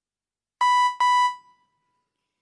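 An electronic signal bell dings twice in quick succession, each ding a clear high tone that fades over about half a second. It is the kind of bell that cues a reciter to begin at a Qur'an recitation contest.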